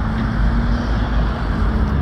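Steady street traffic noise: a deep, even rumble with a faint steady hum running through it.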